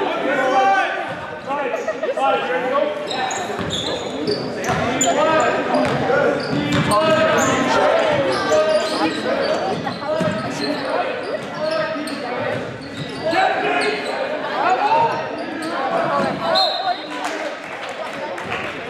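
Basketball game in a gym: indistinct crowd and player voices echoing in the hall over a ball bouncing on the court.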